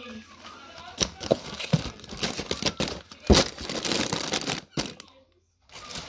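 Rustling and crinkling of packaging being handled, with scattered clicks and one sharp knock about three seconds in; the sound drops out briefly near the end.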